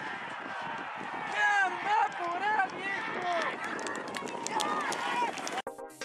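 Crowd of spectators shouting and yelling at a horse race start, many voices overlapping. Near the end it cuts off suddenly into electronic music.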